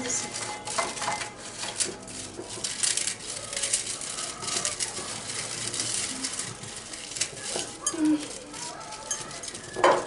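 Petit beurre biscuits crunching and crackling as they are crushed by hand in a glass bowl, with light clinks of hands against the glass. One louder thump near the end.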